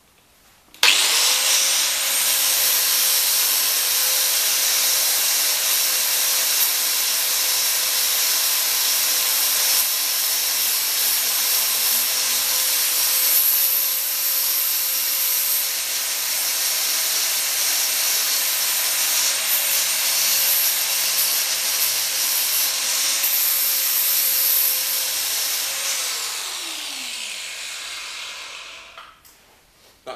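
Angle grinder fitted with an 80-grit flap disc, switched on about a second in and sanding paint off the steel drawbar of a trailer, running steadily with a constant motor whine. Near the end it is switched off and the whine falls away as the disc spins down to a stop.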